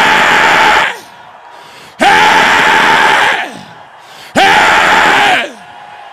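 A man shouting three long, drawn-out yells into a handheld microphone, each held for about a second on one pitch, roughly two seconds apart.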